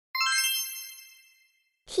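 A bright chime sound effect marking the answer reveal: several high ringing tones struck together once, then fading away over about a second and a half.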